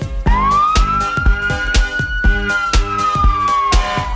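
Cartoon police siren sound effect: one long wail that rises over the first second or two and then slowly falls, over a children's song backing track with a steady beat.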